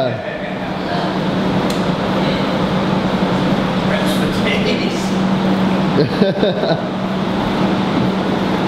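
Steady low hum under indistinct background voices, with a few short voice sounds about six seconds in.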